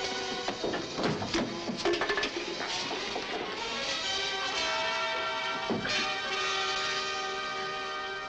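Dramatic orchestral film score playing over a fistfight, with the thuds and crashes of blows and bodies hitting wood several times in the first three seconds and once more about six seconds in. From about four seconds in the music settles into held chords.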